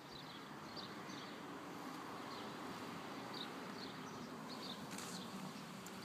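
Quiet outdoor ambience: small birds chirping briefly every half second to a second over a faint steady hum.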